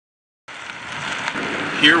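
Minivan driving along a gravel road toward the listener: steady tyre and road noise that grows louder as it approaches, fading in after a brief silence. A man's voice starts right at the end.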